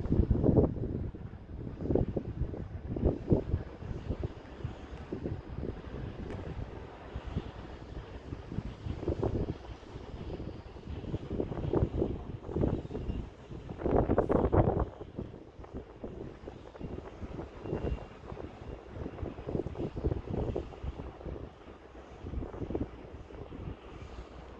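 Gusting wind buffeting the camera microphone in irregular low rumbling bursts, loudest about fourteen seconds in.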